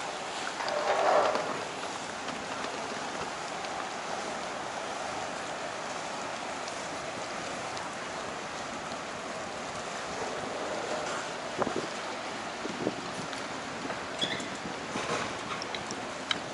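Steady outdoor noise of motorboat traffic and water on a canal, with wind on the microphone. A brief louder sound comes about a second in, and a few small clicks come later.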